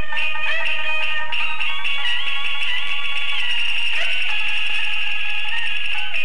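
Peking opera music from a 1932 gramophone record of a painted-face (hualian) aria, with jinghu fiddle accompaniment. The melody moves in steps and then holds a long high note from about two seconds in.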